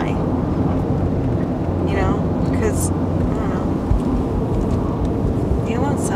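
Steady road and engine noise heard from inside a moving Toyota car's cabin, a low rumble with tyre hiss. A brief bit of voice comes about two seconds in, and again just before the end.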